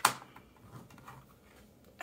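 A single sharp click from the marker just used to sign the painting as she finishes with it. After it come faint handling sounds as the canvas is lifted.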